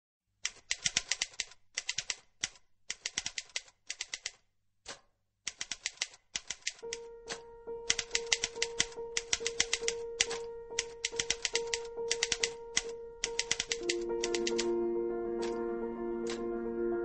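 Typewriter keys clattering in quick bursts, part of a news-style intro. A music bed enters about seven seconds in with a held note, and chords build under the typing near the end.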